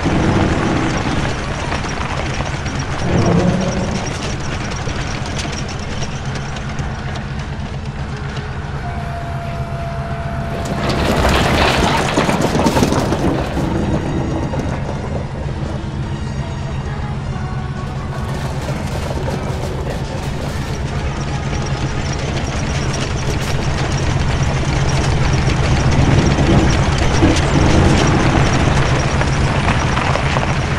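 Film sound effect of a jet-thrust garbage cart's engine: a steady low mechanical drone, with a loud rushing blast about eleven seconds in that lasts a couple of seconds.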